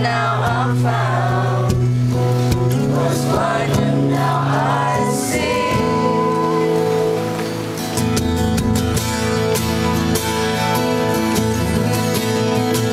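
Live acoustic music: two acoustic guitars playing, with voices singing over them for the first half. From about six seconds in, the guitars carry on alone.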